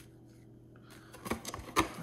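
Hands handling a cardboard trading-card box and its wrapped card packs: nearly quiet at first, then light rustling and a few sharp taps and clicks in the second half, the loudest near the end.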